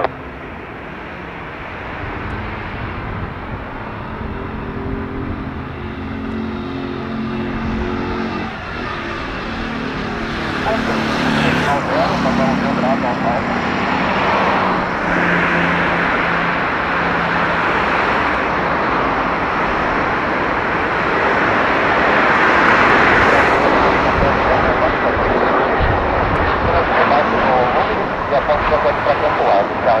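Gulfstream G550 business jet on final approach, its twin Rolls-Royce BR710 turbofans growing steadily louder as it comes in to land. A low hum drops in pitch over the first half, and the jet noise peaks about three-quarters of the way through before easing slightly.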